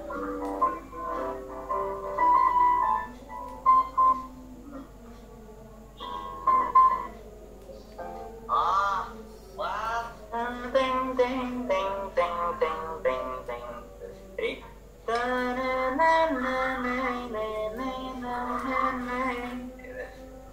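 Simple piano melody in short phrases, heard through a video call, with a man's voice singing and counting along with the notes.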